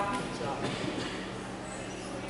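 Room noise of a large hall: a steady low hum under a faint, even hiss, with no distinct event. The end of a spoken command clips the very start.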